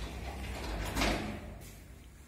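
Sliding doors of a 1989 KMZ passenger elevator closing, with a rushing sound that peaks as they shut about a second in, over a low steady hum.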